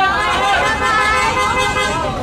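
A close, dense crowd of fans with many voices talking and calling out at once, loud and steady.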